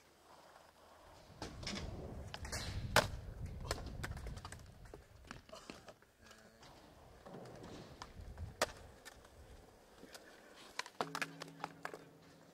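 Skateboard wheels rolling on concrete, with sharp clacks of the board hitting the ground. The loudest clack comes about three seconds in and another near nine seconds, and a quick run of clacks comes near the end.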